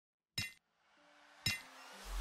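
Silence, then two short, bright metallic clinks about a second apart, each ringing briefly, with a faint rising hiss between them.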